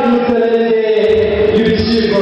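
A man's voice singing long held notes into a stage microphone, the pitch stepping slowly rather than moving like speech.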